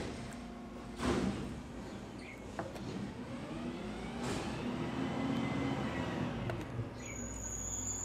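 Garbage truck passing by: its engine hum swells through the middle and fades again, with a sharp noise about a second in and a high steady whine starting near the end.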